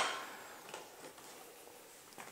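Quiet room tone, with the tail of a spoken word at the very start and a faint soft sound under a second in.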